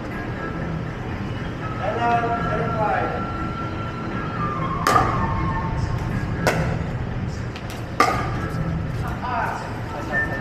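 Pickleball paddles striking a hard plastic ball during a rally: three sharp pops, about a second and a half apart, over background voices and music.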